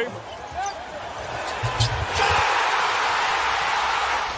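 Basketball game on an arena court: a few low thuds of the ball, then a loud crowd roar breaking out about two seconds in and holding steady.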